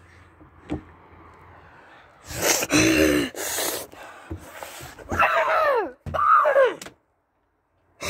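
A boy's wordless shouts and moans that slide down in pitch, mixed with knocks and handling noise from a window. The sound cuts out completely for about the last second.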